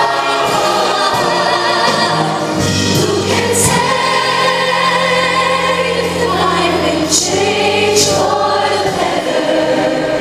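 Massed children's choir singing together, with a female soloist singing into a microphone and a sustained low accompaniment underneath.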